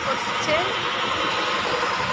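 Steady vehicle engine and road noise, with a brief voice about half a second in.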